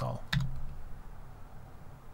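A single computer keyboard keystroke clicks about a third of a second in.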